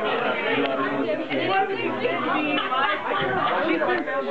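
Several people talking over one another at once, a steady babble of indistinct chatter with no single voice standing out.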